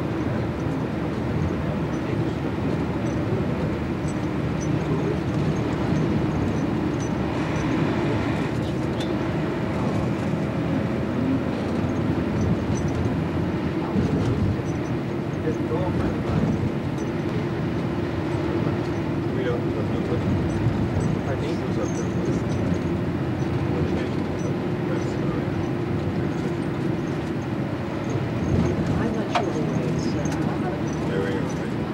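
Steady engine and road noise of a moving vehicle, continuous without sharp breaks.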